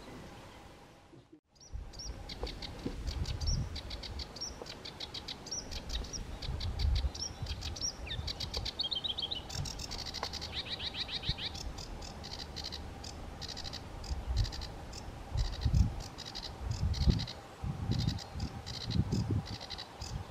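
Sedge warbler singing a fast, varied song of chattering repeated notes and trills, with a descending run of notes about eight seconds in. The song starts about two seconds in, after a brief dip to near silence, and intermittent low rumbles sit beneath it.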